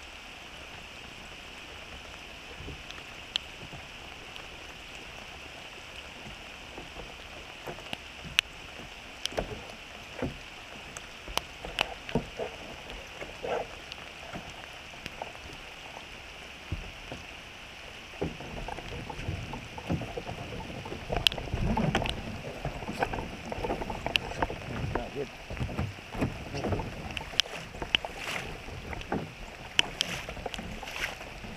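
Steady hiss of rain and river current with scattered sharp ticks. About two-thirds of the way in, irregular sloshing and splashing start, from hands paddling in the water beside a sit-in kayak.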